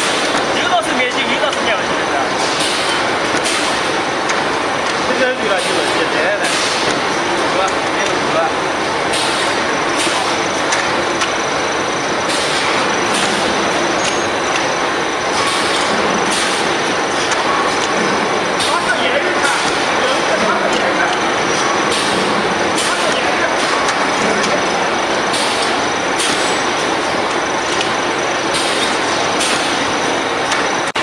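Croissant production line running: a steady mechanical clatter and hum from the conveyor and rotary dough-cutting rollers, with indistinct voices in the factory.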